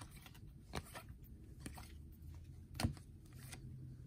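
Panini Prizm basketball cards being handled and flipped through in a stack: faint sliding and a few soft clicks of card on card, the loudest a little under three seconds in.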